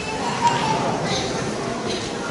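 Indistinct voices in a large hall, with a short knock about half a second in.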